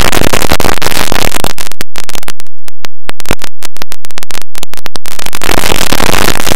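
Extremely loud, clipped and distorted mix of many audio clips stacked on top of one another, a harsh noise-like wall of sound. From about a second and a half in until about five seconds it breaks into rapid stuttering bursts with brief silent gaps, then returns to the solid wash.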